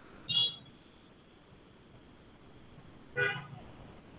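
Two short pitched toots about three seconds apart, over a faint steady hiss.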